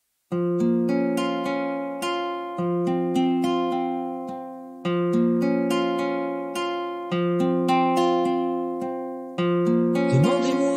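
Instrumental music: picked guitar arpeggios, starting sharply just after the beginning, with each note ringing and fading and a new chord about every two and a quarter seconds.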